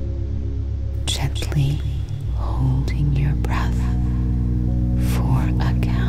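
Ambient sleep music of steady, low sustained tones, with soft whispered speech coming in about a second in and running over it.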